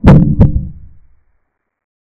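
Two deep thumps about half a second apart, the first the loudest, dying away within about a second: an added sound effect on the otherwise silent track.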